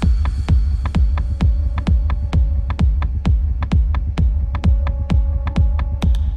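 Techno in a DJ mix: a four-on-the-floor kick drum at a little over two beats a second over a heavy, steady sub-bass rumble. A held synth tone enters near the end.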